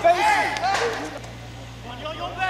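Several voices shouting calls on an open football pitch, loudest in the first second, then dropping to quieter background with faint voices.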